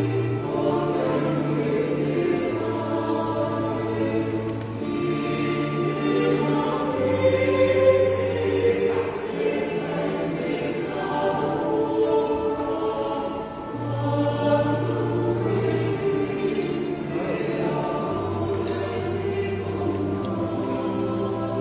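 Choir singing a hymn over a sustained accompaniment, its long held bass notes changing every couple of seconds.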